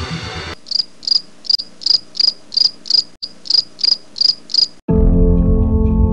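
Cricket chirping: an even run of about a dozen short, high chirps, roughly three a second, after electronic music cuts off. Louder organ-like keyboard music comes in near the end.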